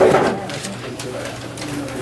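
Indistinct, low voices of people talking, opening with a short loud vocal sound, over a steady low hum.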